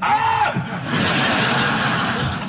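A short held vocal sound at the start, then a studio audience laughing steadily.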